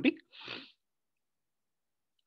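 A man's short, soft breath of about half a second, just after he stops speaking and fainter than his voice.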